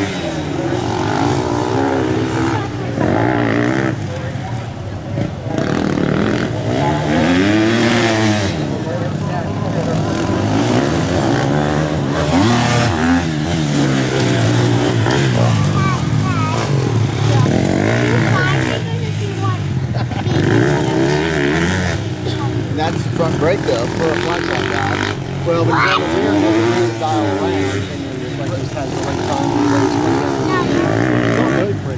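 Dirt bike engines revving up and easing off again and again as the bikes ride through the track's turns, the pitch rising and falling with each burst of throttle, with more than one bike heard at once at times.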